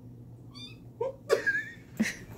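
Kitten mewing in protest at being held and kissed: a short, high mew about half a second in, then louder cries with sharp clicks around a second and a half in as it squirms to get free.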